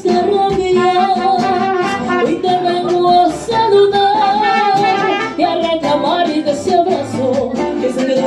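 Mariachi band playing a song live: brass melody with held, wavering notes over guitar accompaniment.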